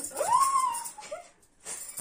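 A single high-pitched whine that rises, holds briefly and then falls away, followed by a moment of near silence.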